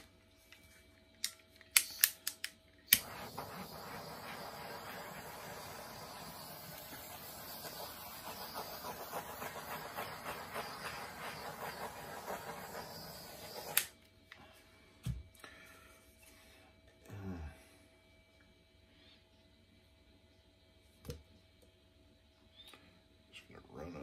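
A hairdryer, after a few handling clicks, starts about three seconds in and blows with a steady hiss for about eleven seconds, then cuts off suddenly with a click. It is blowing wet pouring paint out across a canvas.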